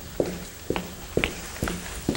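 Footsteps of a person walking at an even pace, about two steps a second, each step a sharp knock.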